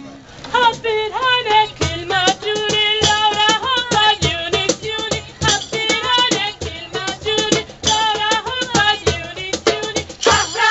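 Women's choir singing a song in Arabic, a winding, ornamented melody, over live hand percussion marking a steady beat. The singing comes back in about half a second in after a brief dip.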